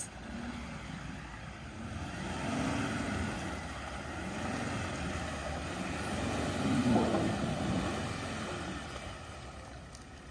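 A 4WD ute's engine pulling through deep muddy ruts, its revs rising and falling a few times, loudest about seven seconds in.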